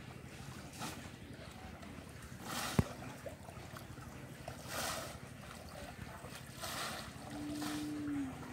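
Bamboo polo fish traps plunged again and again into shallow, weedy pond water: short splashes about every two seconds. A single sharp knock comes about three seconds in, and a short steady tone sounds near the end.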